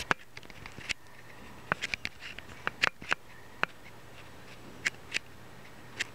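Rubber bands being stretched and placed on the pegs of a plastic rubber-band loom: irregular sharp clicks and snaps, some in quick pairs.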